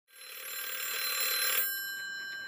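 A bell ringing with a fast rattle, several tones at once. It stops about a second and a half in, and its tones ring on faintly after.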